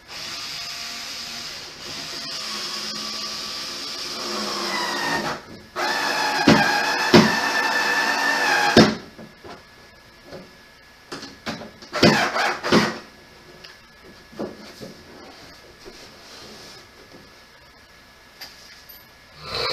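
A power drill/driver running screws into a plastic toddler chair. The motor whines steadily and climbs in pitch, stops briefly, then runs again for about three seconds with a few sharp clicks. A cluster of knocks on the plastic parts follows about twelve seconds in.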